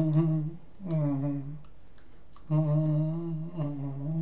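A man humming in short, steady, low-pitched hums, one running into the start and others after a pause of about a second near the middle.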